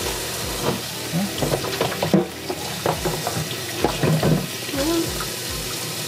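Kitchen faucet running steadily into the sink, with a few light knocks and the scrub of a dish brush on a plastic container.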